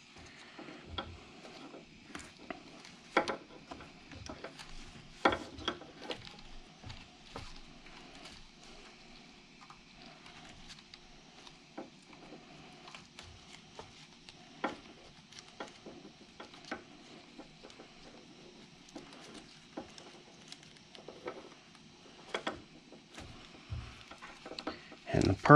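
Quiet handling noise as gloved hands twist stripped headlight wires together: scattered small clicks and rustles, the sharpest about three and five seconds in.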